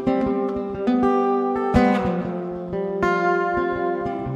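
Acoustic guitar picking the opening of a song, notes and chords plucked several times a second and left ringing.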